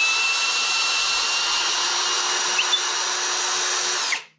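Parkside Performance PSBSAP 20-Li A1 brushless cordless drill-driver running steadily in reverse, backing a long carpentry screw out of a hardwood beam: an even, high motor whine with the screw turning in the wood, cut off suddenly right at the end.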